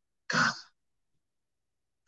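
A man's single brief vocal sound into a handheld microphone, lasting about a third of a second near the start: a throat-clearing-like burst or a short clipped word.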